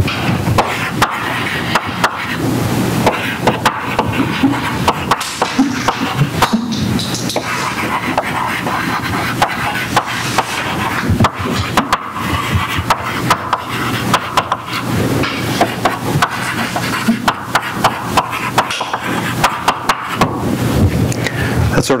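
Chalk writing on a blackboard: a long, irregular run of sharp taps and scratches as a line of words is written.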